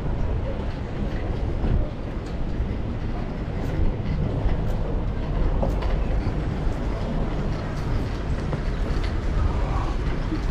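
Steady low rumble with an even hiss over it and a few faint clicks: outdoor background noise picked up while walking, with no single clear source.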